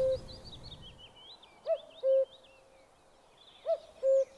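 Common cuckoo calling its two-note "cuck-oo", a short higher note dropping to a lower held one, repeated about every two seconds. Faint high chirping of other small birds runs underneath.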